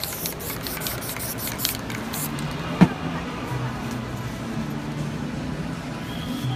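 Aerosol spray-paint can spraying in short bursts for the first two seconds, then stopping. About halfway through there is one sharp knock, the loudest sound, and low background music continues underneath.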